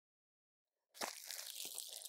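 Cellophane-wrapped wig cap packets crinkling and rustling as they are handled, starting about halfway through.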